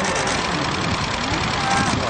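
A crowd of fans talking and calling out: a steady hubbub with single voices rising above it now and then.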